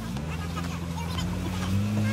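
Motorboat engine running steadily under way, its hum stepping up slightly in pitch near the end.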